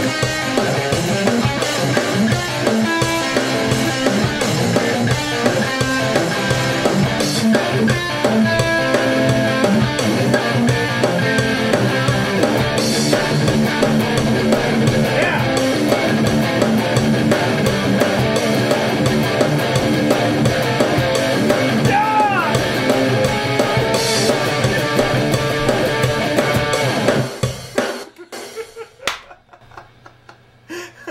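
Electric guitar riffing over a steady rock drum beat, the music stopping suddenly near the end.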